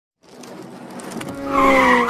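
Tyre screech sound effect: a hiss that swells steadily louder, then turns into a loud squeal that sags slightly in pitch over the last half second.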